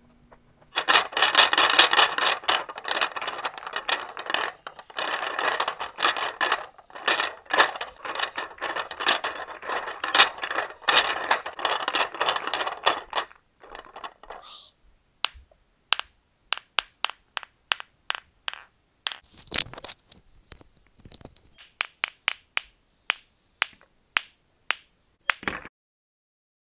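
Pool balls clacking and rattling against each other in a rack as hands rub and shuffle them: a dense, steady run of clicks for about the first half. Then come sparser single sharp clicks as balls are picked up and knocked together, with a brief hissy scrape among them.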